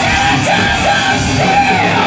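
Live power metal band playing at full volume, distorted guitars over a drum kit, with a woman singing high notes on top: a few short rising notes, then a longer arching one near the end.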